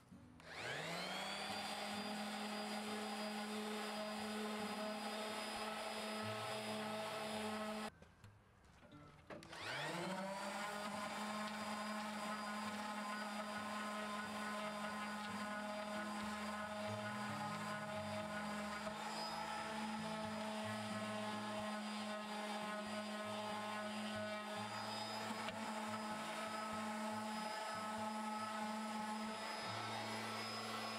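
Electric random orbital sander running on plywood. Its motor winds up about half a second in and runs with a steady hum, is switched off near the 8-second mark for about a second and a half, then winds up again and runs steadily on.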